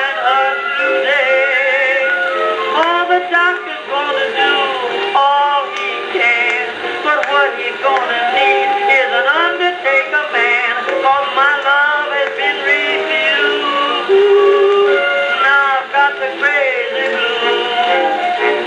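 Edison Diamond Disc phonograph playing a 1921 acoustic-era jazz-blues record. The music sounds thin, with little deep bass and no high treble.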